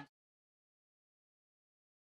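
Dead silence: the arena sound cuts off abruptly right at the start, and nothing follows.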